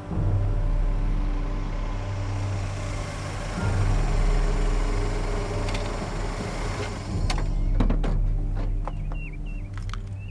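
A Toyota Corolla sedan drives up a concrete driveway and comes to a stop, its engine and tyres heard over background music. In the last three seconds several sharp clicks and knocks come as the car's doors are opened.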